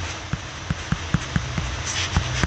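Stylus tip tapping on a tablet's glass screen during handwriting: a rapid, irregular run of sharp clicks, about four or five a second, over a steady low hum.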